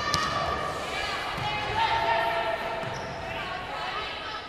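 Indoor volleyball rally: the ball struck sharply just after the start, with court sounds echoing in a large arena and crowd voices behind.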